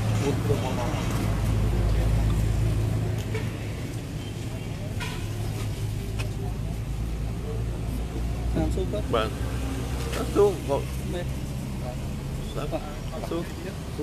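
A steady low engine hum from a nearby idling motor vehicle, with a deeper rumble swelling for the first few seconds. Brief voices break in a little after the middle.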